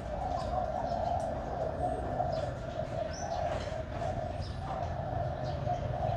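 Birds calling in the background: a continuous low, wavering sound with a few short, high chirps scattered through it.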